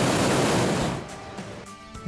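Hot air balloon propane burner firing: a steady rushing blast of flame that dies away about a second in, with faint background music under it.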